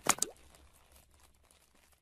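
A quick pop sound effect for an animated channel logo: a few sharp pops with quick sliding pitches right at the start, dying away within about half a second.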